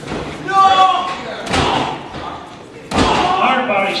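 Two hard impacts of wrestlers' strikes in the ring, about a second and a half apart, each sudden and echoing in the hall, amid shouting voices.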